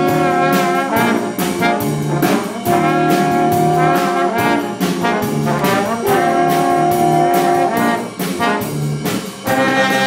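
Live band's brass section, led by trombones, playing held chords in repeated phrases of about a second and a half each, over a low bass line and a steady drum beat.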